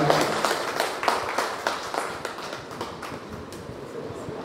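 Audience clapping at the end of a speech: many hands at once, fading away over the few seconds.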